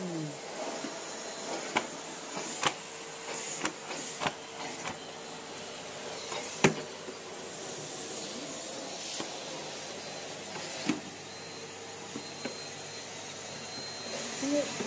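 Numatic Henry vacuum cleaner running steadily, with several sharp knocks scattered through, the loudest about six and a half seconds in.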